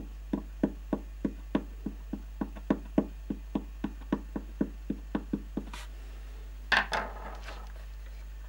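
A pointed tool tapping quickly across the spruce top plate of a nyckelharpa body, about three to four light wooden taps a second, each with a short ring. The taps trace the plate's node points by ear. The taps stop a little before six seconds in, and a louder handling bump follows about a second later.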